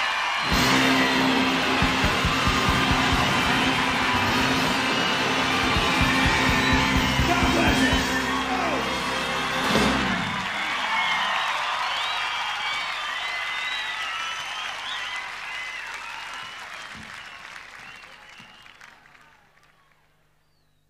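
A live rock band with electric guitar plays out the final bars of a song and stops about halfway through, then a large audience cheers and applauds, the noise fading away by the end.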